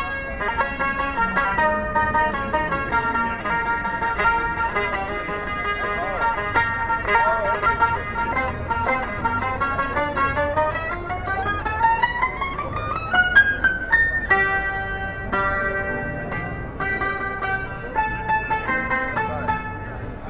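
Suzuki taishōgoto, a Japanese keyed zither, played through an amplifier: quick repeated plucks on its steel strings, fretted by pressing the numbered keys. In the middle the melody makes a long rising slide before settling into separate repeated notes.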